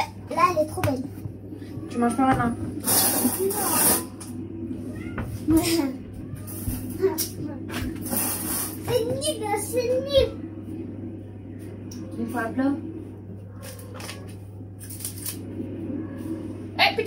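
Children's voices talking in short snatches over a steady low hum. There are two brief bursts of noise, one about three seconds in and one about eight seconds in.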